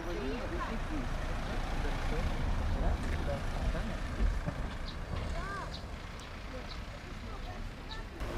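A van driving past on the road, a low engine and tyre rumble that builds to a peak a few seconds in and fades away. Faint bird chirps and distant voices sound over it.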